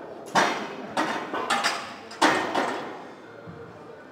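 A loaded barbell and its iron plates clanking against a squat rack: four sharp metallic clanks with a ringing tail, about two-thirds of a second apart. The loudest are the first and the last, a little past two seconds in.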